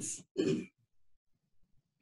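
A man's voice: the tail of a spoken word, then a short throat clearing about half a second in.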